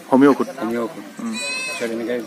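A man speaking, with a short, high, wavering animal call behind him about a second and a half in.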